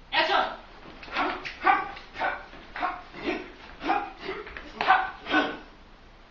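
A man giving a rapid series of short, loud shouted yells, about two a second, like fighting cries.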